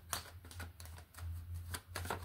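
A deck of tarot cards being shuffled by hand, giving a run of irregular crisp clicks and flicks, about six or seven in two seconds. A low steady hum runs underneath.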